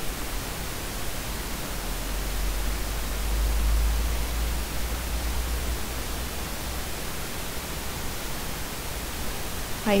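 Steady hiss of recording noise with a low hum underneath, swelling slightly in the middle; no clicks or other distinct events.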